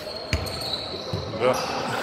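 A basketball bouncing once on the floor about a third of a second in, a single dull thump, with a faint steady high whine underneath.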